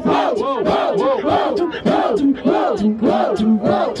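Beatboxing into a handheld microphone: a hummed bass note that steps lower about three seconds in, under a steady rhythm of sharp clicks and rising-and-falling vocal sweeps about twice a second.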